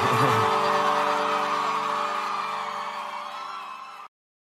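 A live band's final chord held and slowly fading out under audience cheering and whoops, closing a live sertanejo song.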